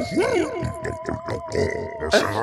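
A garbled, wordless alien character voice, with subtitles standing in for its lines, over background music with steady held notes.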